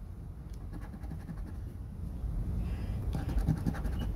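A coin scratching the coating off a lottery scratch-off ticket in quick repeated strokes, growing louder after about two seconds.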